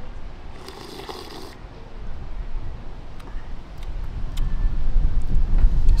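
A short slurp of a thick frozen drink sucked through a straw, about a second in, then wind buffeting the microphone in a low rumble that grows louder toward the end.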